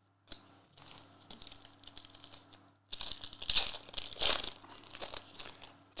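22-23 Revolution foil basketball cards sliding and rubbing against each other in the hands as they are flipped through, a dry rustling and crinkling. It starts faint and grows louder and denser about three seconds in.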